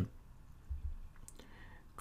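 A few faint, sharp clicks over quiet room tone, with a soft low thump just under a second in.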